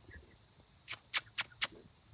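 Four quick, sharp clicking squeaks about a quarter second apart in the second half: a person's mouth-click calls to coax animals out.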